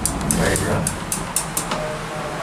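Center-opening elevator doors on a MAC door operator sliding, with a low rumble and a run of light clicks and rattles from the door hangers.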